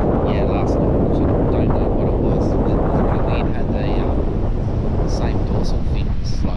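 Strong wind buffeting the microphone, a loud steady low rumble, with a man's voice partly buried under it.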